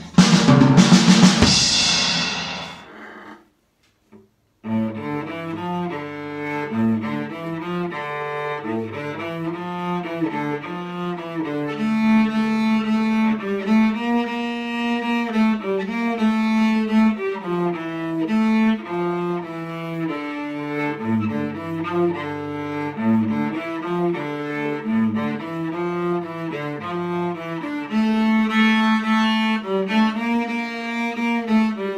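A drum kit played, ending about two seconds in with the cymbals ringing away. After about a second of silence, a cello starts playing a bowed melody of sustained notes that moves from pitch to pitch.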